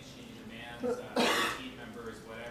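A person coughs once, loudly, about a second in, just after a brief throat sound, over faint speech in the room.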